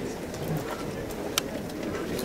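Low murmur of a seated audience in a dining room, many people talking quietly at once, with a single sharp click or clink about one and a half seconds in.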